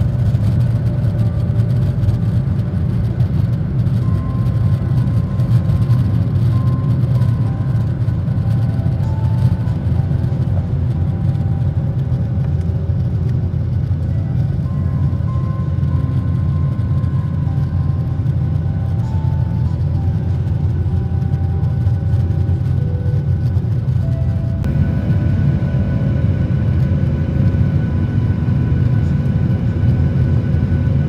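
Steady, loud roar of a jet airliner's engines and airflow heard from inside the cabin as it takes off and climbs, with music playing over it.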